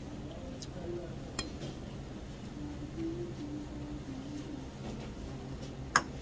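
A man eating noodles at a restaurant table, with faint background voices throughout and one sharp clink of chopsticks or tableware about a second and a half in.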